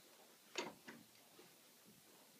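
Near silence broken by two short clicks, about half a second in and a third of a second later, with a fainter tick after them.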